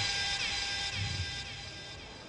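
Short burst of electronic music: a held chord with falling swoops repeating about twice a second, slowly fading away.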